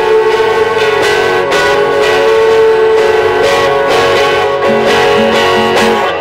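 Guitar music: strummed and plucked guitars playing over one long held note, with a few lower notes near the end.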